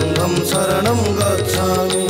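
Odissi classical dance music: mardala drum strokes keep an even beat of about three a second under a gliding melodic line.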